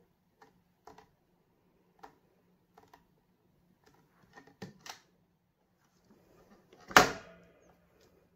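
Faint clicks and taps of hands handling a clear acrylic stamp and block on a stamping platform, then one sharp loud knock about seven seconds in as the platform's clear hinged lid is swung open and set down.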